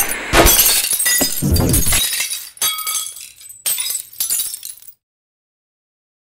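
Sound effect of glass breaking: a crash at the start and a second one about half a second in, followed by tinkling shards that thin out and cut off abruptly about five seconds in.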